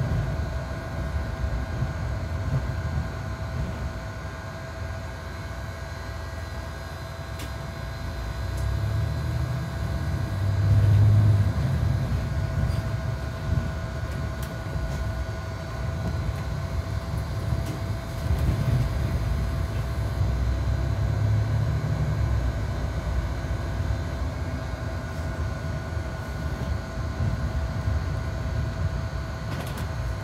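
Cabin noise inside a moving Mercedes-Benz Citaro C2 G articulated bus: a continuous low engine and road rumble that swells twice, about ten seconds in and again around twenty seconds, under a steady thin whine.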